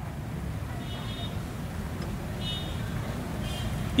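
A steady low rumble of background noise, with a few faint, short high tones about a second apart.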